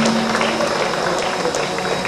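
Audience applauding: many hands clapping at once in a dense patter.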